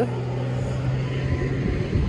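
A steady, low engine-like hum that fades away near the end, over a low rumbling background.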